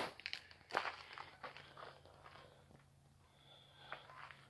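Footsteps on gravel, a few irregular steps in the first half that die away about halfway through.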